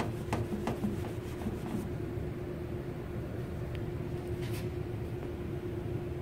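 Cloth rag wiping brake fluid off a painted car panel in quick back-and-forth strokes, about three a second, which stop about two seconds in. A steady low hum runs underneath.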